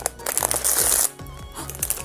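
Thin foil wrapper crinkling and crackling as it is pulled open by hand, busiest in the first second and then quieter.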